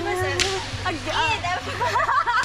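People talking, with two sharp cracks like slaps within the first half second.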